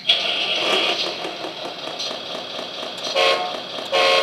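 An RC articulated dump truck's onboard sound module playing simulated diesel truck sounds through its speaker, starting abruptly as the sound system is switched on with the transmitter's VRA knob. A short horn-like tone sounds about three seconds in and again near the end.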